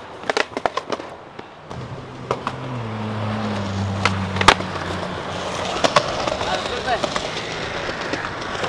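Skateboard on a concrete sidewalk: a quick run of sharp clacks as a flip trick lands in the first second, then wheels rolling, and a loud single crack of the board about four and a half seconds in. A low hum sounds underneath through the middle.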